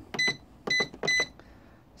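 Three short, high-pitched beeps from the keypad of a digital price-computing scale as a unit price is keyed in.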